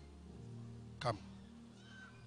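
A man calls out one short word, "Come," its pitch dropping sharply, over soft sustained background music.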